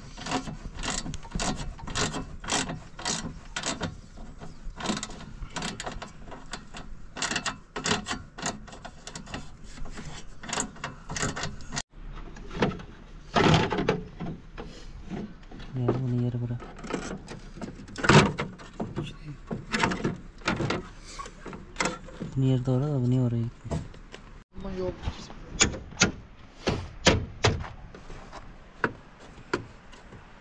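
Hand ratchet clicking in quick repeated strokes while bolts are worked at the front of the engine, then scattered clanks and knocks of metal parts being handled.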